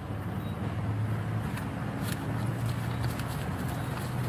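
Steady low hum of an idling vehicle engine, with faint rustling and small knocks as items are pulled out of a nylon backpack.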